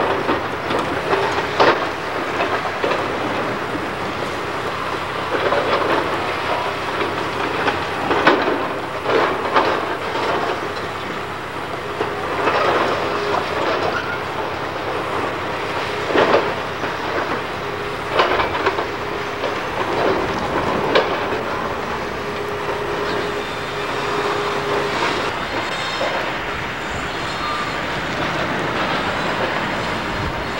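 Hydraulic excavator demolishing a brick school building: its engine runs continuously under irregular clanks and crashes of breaking masonry and timber, with a steady whine in the middle stretch.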